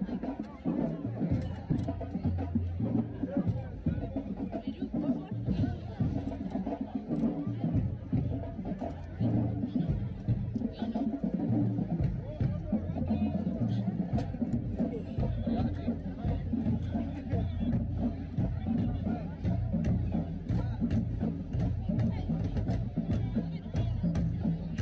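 Marching band playing in the stands: sousaphones hold low notes that step from pitch to pitch, with drum hits over them and crowd chatter around.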